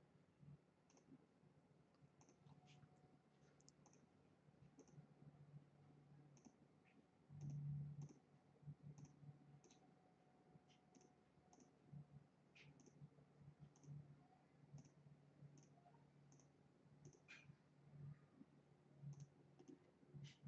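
Faint computer mouse button clicks, irregular at about one or two a second, each placing a point in the digitizing software. A brief low rumble comes about seven and a half seconds in.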